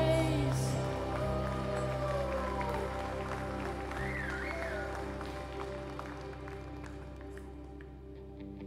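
Worship band playing softly: sustained keyboard pad chords under a woman singing a few held, sliding notes, the music slowly fading out. Scattered clapping comes in over the last few seconds.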